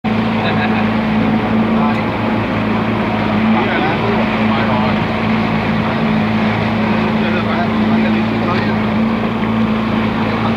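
A boat's outboard motor running at steady speed, a constant low drone with no change in pitch.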